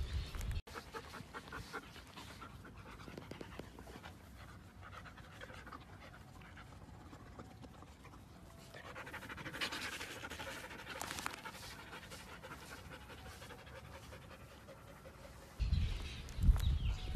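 A white husky panting close to the microphone, loudest for a few seconds in the middle. A short low rumble near the start and again just before the end.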